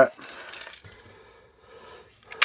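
Quiet handling noise as a plastic bottle opener with a metal keyring clip is picked up off a wooden table, with light clinks of the keyring, mostly in the first second.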